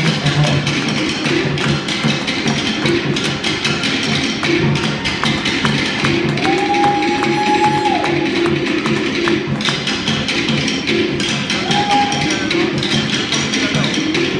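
Percussion music with a fast, steady beat on wooden drums, with a held single note sounding twice over it.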